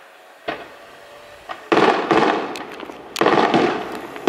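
Fireworks going off: a small pop about half a second in, then two loud bursts about a second and a half apart, each trailing off in crackling.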